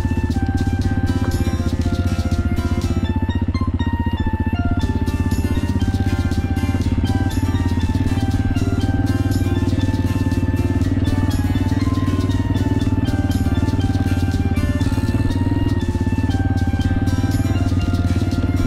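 Background music with a melody of short, steady notes, over the steady low running of a Honda XLR200R's single-cylinder engine.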